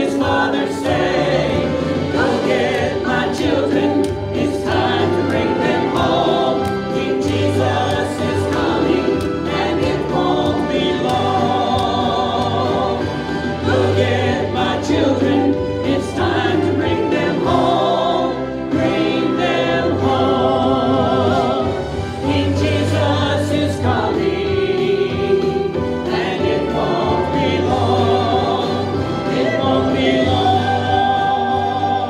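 Gospel song sung by voices over steady instrumental accompaniment, with held, wavering sung notes.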